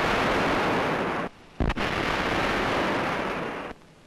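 Two artificial lightning discharges from a high-voltage laboratory generator striking the lightning rods. Each starts with a sharp crack and goes on as a loud, steady crackling hiss. The first cuts off about a second in; the second cracks about a second and a half in and lasts about two seconds.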